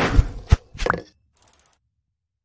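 Logo-animation sound effect: two deep thumps in quick succession in the first half-second, then a short swish just before one second and a faint sparkle that dies out.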